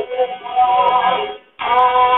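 Rajasthani folk song (geet): a voice singing held notes with instrumental accompaniment. The sound cuts out for a moment near the end, then resumes.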